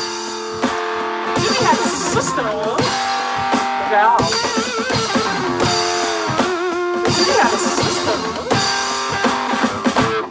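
Electric guitar playing a rock-blues lead, with held notes, string bends and vibrato, over a drum beat.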